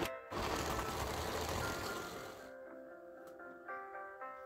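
Electric blender motor running for about two seconds, blending tomato chunks in its jar; it starts shortly after the start and cuts off suddenly, over background music.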